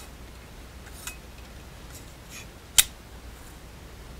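Metal box handled and slid against a height gauge's scriber on a bench: faint scraping and small metal clicks, with one sharp metallic click about three seconds in.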